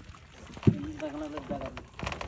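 A voice speaking or calling out away from the microphone, preceded by a single sharp knock about two-thirds of a second in.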